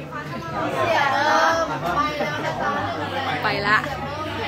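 People talking, with several voices chattering over one another.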